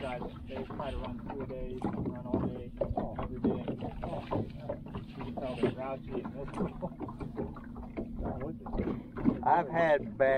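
People talking, the words indistinct, over a steady low hum.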